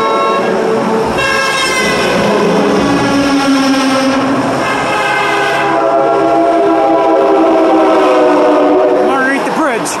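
Semi trucks in a passing convoy sounding their air horns: long held blasts one after another, each a chord of several tones, over the noise of passing traffic.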